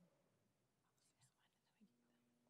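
Near silence: room tone, with a very faint murmur of voices about a second in.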